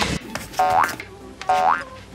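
Two cartoon 'boing' sound effects, each a quick upward-sliding springy tone, about half a second and a second and a half in, after a brief whoosh at the start, as part of an animated intro's sound effects.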